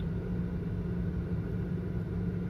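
Steady low hum of a car running at idle, heard from inside its cabin, with one constant low tone.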